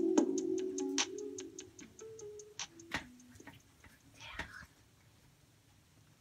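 The outro of a pop song fading out as it plays from vinyl on a suitcase record player: sustained notes over an even ticking beat about five times a second, dying away by about four seconds in. A brief soft noise follows just after, then near silence.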